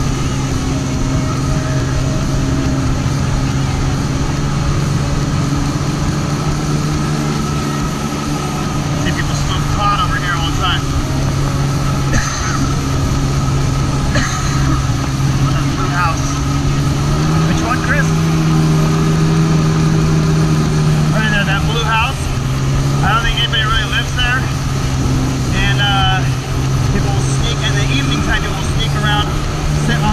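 Kawasaki SXR 800 stand-up jet ski's two-stroke twin engine running under way with a steady hum. Its pitch rises about halfway through, holds for a few seconds, then drops back. Wavering, voice-like high sounds come and go over it in the second half.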